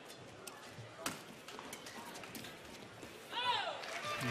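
Badminton rally: a string of sharp racket strikes on the shuttlecock over hall ambience, the loudest about a second in. A short squeak falling in pitch comes near the end.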